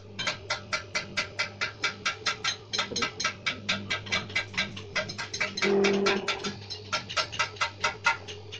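Paper plate making machine running with a rapid, even clicking of about four clicks a second over a steady motor hum. A short pitched tone cuts in a little before six seconds.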